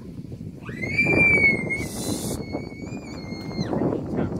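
One long, high, steady whistle of about three seconds that rises sharply at the start and drops away at the end, with a brief hiss partway through.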